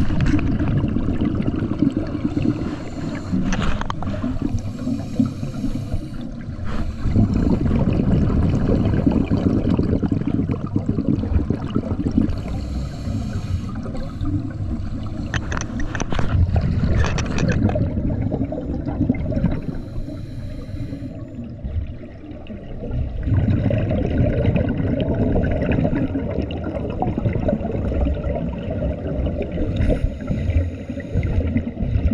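Scuba regulator exhaust bubbles gurgling underwater, heard as a low, muffled rush that swells and eases in uneven surges a few seconds apart, with a few short clicks.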